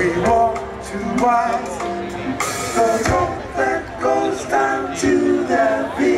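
Live band music with singing, a pitched melody line over guitars, bass and percussion, picked up by a camcorder's microphones from the audience.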